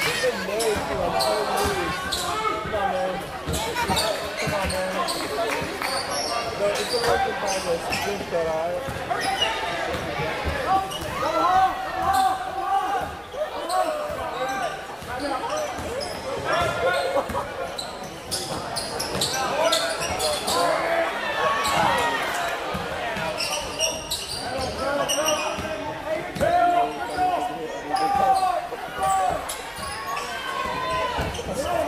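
Basketball dribbling and bouncing on a hardwood gym floor during play, with many short thuds scattered throughout, over a continuous hum of spectators' voices in the hall.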